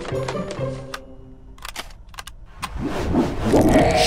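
Cartoon soundtrack: light background music, then a few short clicks in the middle and a swelling whoosh that grows louder near the end, as puzzle pieces snap into a wooden spider board.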